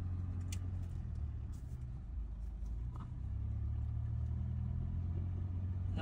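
A car's engine running with a steady low hum as the car drives along, heard from inside the car; it dips briefly partway through, then settles again.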